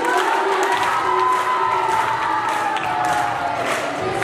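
A group of children's voices singing or calling out together, holding one long note that slowly falls in pitch over about three seconds.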